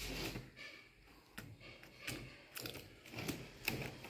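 Faint handling noises: a few light clicks and rustles as a battery pack in a plastic case and its wires are touched and moved, the loudest click near the end.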